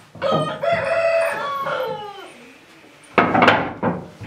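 A rooster crowing once: a drawn-out call that holds its pitch, then falls away over about two seconds. Near the end comes a short, harsh burst of noise about as loud as the crow.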